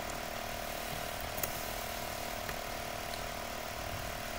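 Steady low background hum and hiss with a constant tone, and one faint click about a second and a half in.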